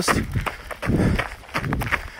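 A runner's footsteps and breathing, picked up close on a handheld phone, with irregular thumps and rustling from the phone moving with each stride.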